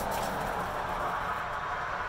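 Steady, even background noise with no distinct sound standing out.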